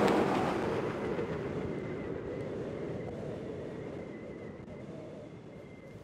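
Heavy tractor-trailer dump truck going past at speed. Its tyre and engine noise is loudest at first and fades steadily as it moves away.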